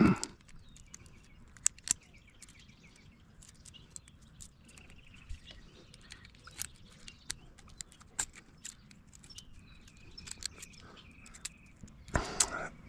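Scattered sharp metallic clicks as a stainless steel hose-clamp band is handled and worked with side-cutting pliers, with faint birds chirping in the background.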